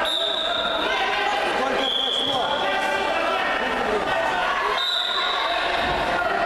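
Referee's whistle blown in three short, steady blasts: one right at the start, one about two seconds in a little lower in pitch, and one about five seconds in, over the voices of spectators talking in a large, echoing sports hall.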